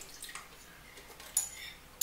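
A spoon scraping and tapping against a bowl as it is emptied into a blender jar, with a sharper clink about one and a half seconds in.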